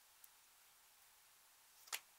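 Near silence with a light tick about a quarter-second in, then one sharp click near the end as a plastic mascara tube is handled and opened in the hands.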